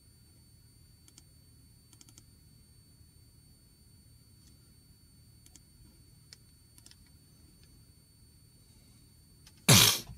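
A few faint, scattered light clicks, then near the end a sudden loud vocal outburst from a man.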